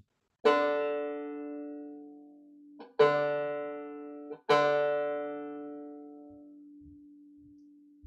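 The fourth (D) string of a 5-string banjo plucked three times, each note left to ring and fade, as its pitch is checked against a tuner after the string has been stretched to bring it down from slightly sharp.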